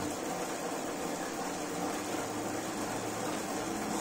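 Steady whirring hiss of a bike's drivetrain spinning a Saris H3 direct-drive smart trainer, even and unbroken.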